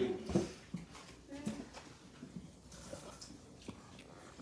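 Quiet table sounds while eating: a few light knocks and clinks of plates and a sauce bowl, with brief soft voice sounds.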